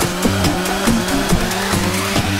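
Electronic dance music mixing psytrance and dubstep: a short break where the kick drum drops out, leaving sustained synth notes that step from pitch to pitch over a high hissing layer.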